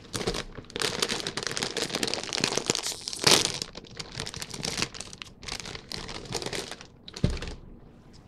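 Plastic potato chip bag crinkling and crackling as it is handled and pulled open. The loudest burst comes about three seconds in, and there is a short sharp crack near the end.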